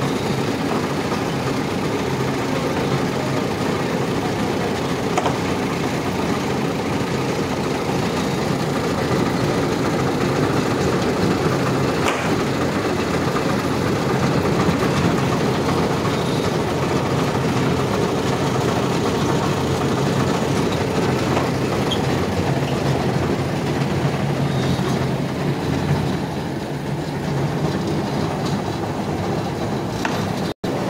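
Truck-mounted borewell winch running steadily: its belt-driven open gear train turns a large reel of pipe, giving a continuous machine noise.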